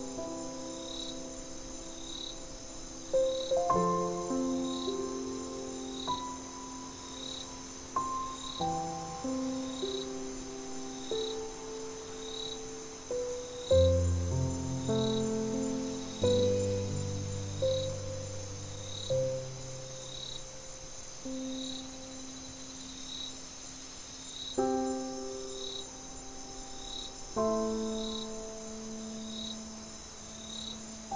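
Slow, gentle solo piano melody of soft single notes and chords, with a deep low chord about halfway through. Underneath runs a steady high cricket trill and regular cricket chirps about twice a second.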